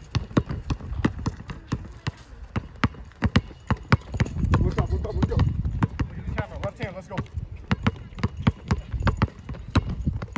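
Basketballs bouncing on a brick-paver court, dribbled one-handed by two players on the move. The bounces come several a second at an uneven rhythm as the two dribbles overlap.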